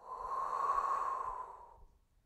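A woman's long exhale through the mouth, swelling and then fading over nearly two seconds. It is breathed out as she lifts into a reverse plank.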